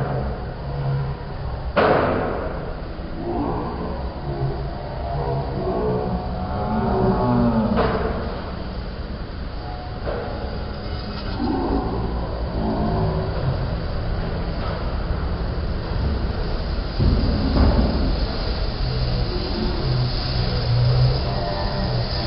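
Restaurant background noise: a steady low rumble under indistinct voices, with a few sharp knocks, the loudest about two seconds in.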